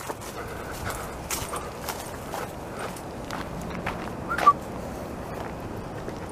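Footsteps of a person and a leashed dog walking over a leaf-strewn dirt path, a run of small irregular clicks and rustles. A brief high squeak about four and a half seconds in.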